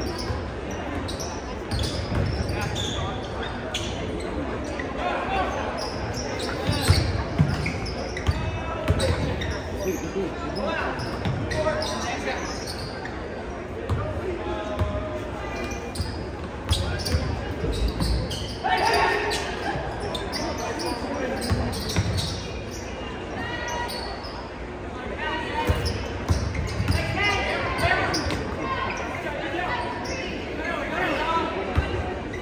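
Basketball dribbled on a hardwood gym floor, its bounces thudding and echoing around a large gymnasium, over the chatter and calls of spectators and players.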